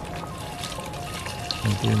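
Water running from a garden hose into a partly filled plastic tub, a steady pouring splash, with background music of short melodic notes playing over it.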